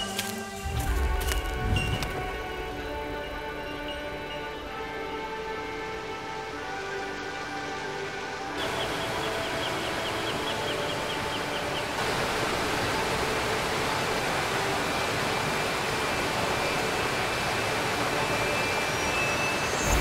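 Background music, joined about eight seconds in by the steady rush of a waterfall, which grows louder a few seconds later while the music carries on faintly beneath.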